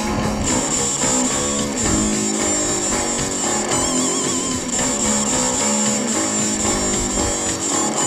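Rock band playing an instrumental passage led by electric guitar over bass and drums, with one guitar note wavering in wide vibrato about halfway through.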